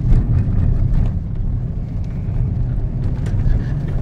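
Ford Ka+ 1.2 three-cylinder petrol engine running under way, heard inside the cabin as a steady low drone mixed with road noise.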